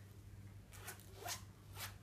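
Faint zip being pulled open on a small zippered Bible cover, in three short pulls.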